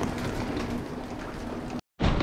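Wheeled suitcase rolling along a carpeted hallway, a steady rumble with a faint low hum, cutting off suddenly near the end.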